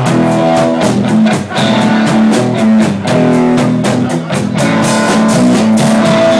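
A live blues band playing: electric guitar to the fore over a drum kit, with a steady beat of drum strokes.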